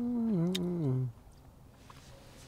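A person humming with closed lips, a few held notes that step and slide downward, stopping about a second in. A small click is heard halfway through the hum.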